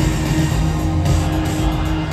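Live band playing an instrumental stretch of a synth-pop song, with synthesizers, electric guitar and drums over heavy bass, played loud through an arena PA.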